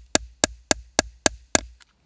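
A hammer striking a steel snap setter in a quick, even series of about seven sharp taps, three to four a second, the last one faint near the end. The setter is flaring the post of a snap into its cap, held on a small anvil over leather, to set the bottom half of the snap.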